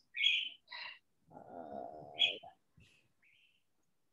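A bird chirping a few short high notes, the last a faint rising one, over a drawn-out spoken "uh".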